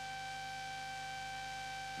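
A steady high whine with evenly spaced overtones over a low hum, unchanging throughout: background tone from the soundtrack of an old film transfer. There is no sound of the furnace itself.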